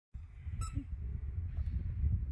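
Low, uneven rumble of wind buffeting a phone microphone outdoors, with one brief high-pitched chirp about half a second in.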